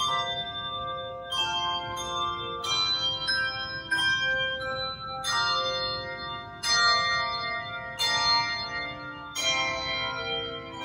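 Handbell choir playing, striking chords of bells about every second or so and letting them ring on and slowly fade into one another.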